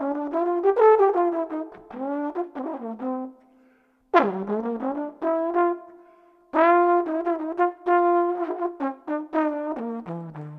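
Unaccompanied jazz trombone, played through a plastic mouthpiece: a run of quick notes in phrases with short breath pauses, a note that swoops in pitch with the slide about four seconds in, then a few longer held notes.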